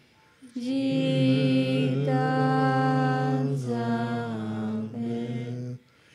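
Tibetan Buddhist prayer chanted in a low voice in long, slowly held melodic notes. There is a breath pause at the start and another just before the end.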